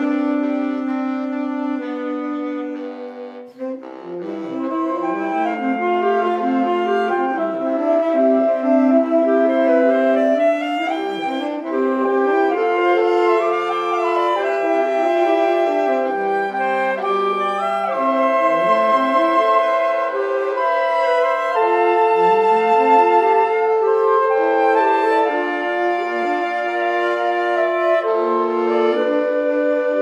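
Saxophone quintet playing a slow melody over sustained harmony in several layered parts, the straight soprano saxophone among them. There is a short lull about three and a half seconds in, after which the full ensemble plays on.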